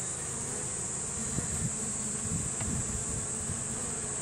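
A colony of honeybees buzzing steadily over the open hive frames.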